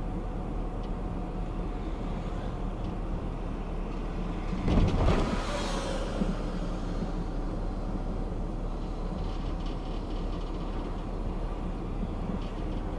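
Steady road and engine noise of a car driving slowly, heard from inside the car, with a louder rumbling burst about five seconds in.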